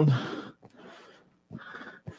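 A short breathy exhale as a word trails off, then faint scratchy strokes of chalk on a blackboard about a second and a half in.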